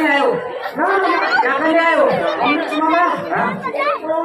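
Speech only: actors speaking stage dialogue, with more than one voice.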